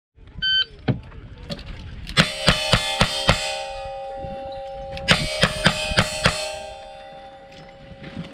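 Shot timer beeps, then single-action revolver shots fire in two quick strings of five, about three shots a second, with a pause between strings. Steel targets ring on after the hits and fade out.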